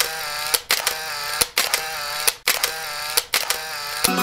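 Sound effects of an animated logo intro: a run of short pitched, slightly bending electronic tones, each restart marked by a sharp click, several times a second.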